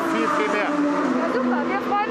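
A man speaking over the steady drone of a race car engine, which drops in pitch about a second in.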